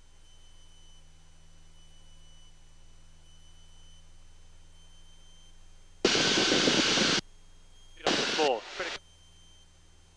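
Faint, steady low drone of a light aerobatic aircraft's engine heard in the cockpit audio. About six seconds in, and again about eight seconds in, the headset intercom cuts in with a short burst of a voice over loud engine and wind noise. Each burst switches off abruptly.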